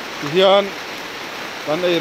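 Steady hiss of rain falling, with a voice speaking over it.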